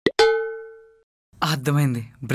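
A single bright, bell-like ding with a sharp attack that rings out and dies away within about a second, followed by a voice speaking near the end.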